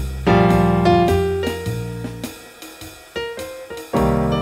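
Electric keyboard playing piano in a jazz-blues tune: full chords over bass notes, thinning about halfway through to a few quieter high notes before a new chord lands at the end.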